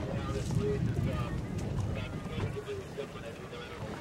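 Wind buffeting the microphone and water noise from a RIB moving through a choppy sea, with indistinct voices.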